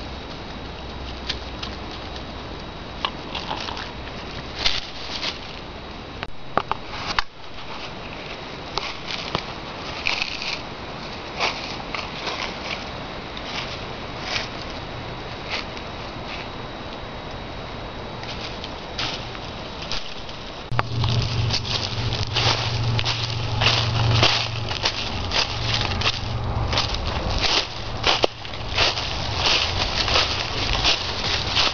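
Footsteps crunching through dry fallen leaves, sparse at first, then louder and quicker from about two-thirds of the way in.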